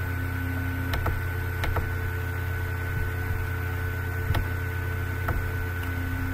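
Steady electrical hum and hiss on the recording, with a few faint clicks of a computer mouse.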